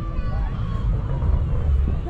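Faint voices of people nearby over a steady low rumble.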